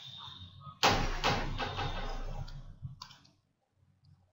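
Stylus writing on a pen tablet: a sudden loud burst of scraping and clicking about a second in, lasting about two and a half seconds, then it goes quiet.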